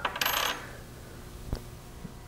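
Brief metallic jingle of a metal weight hanger and slotted masses clinking together as they are handled, followed by a single light click about a second and a half in.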